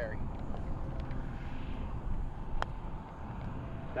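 Wind rumbling on the microphone, with a single light click about two and a half seconds in: a putter striking a golf ball.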